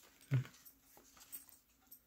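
A short spoken "okay", then faint paper rustles and light ticks as the card pages and tags of a handmade paper journal are handled.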